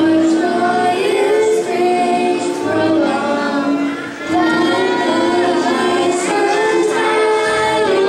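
A group of children singing a melody together into microphones, with keyboard, violin and cello accompaniment. There is a short pause between phrases about halfway.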